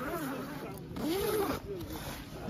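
A zipper on a fabric tent door being pulled open by hand in short scratchy runs, with people talking over it.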